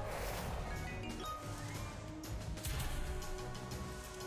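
Video slot game soundtrack: steady background music with short effect sounds as a free spin runs and new symbols drop onto the grid.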